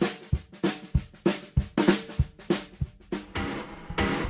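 Drum kit playing a simple rock and roll beat: bass drum thumps alternating with a strong snare backbeat, about three strokes a second, with a longer ringing cymbal wash near the end.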